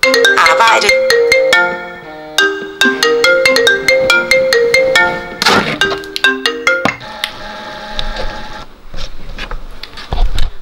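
Smartphone ringtone playing a repeating melody of short bell-like notes. It stops about seven seconds in, when the call is picked up.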